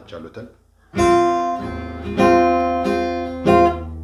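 Acoustic guitar: three chords strummed, the first about a second in, the next just past two seconds and the last near three and a half seconds, each left ringing. These are chords for the Anchihoye mode (kignit).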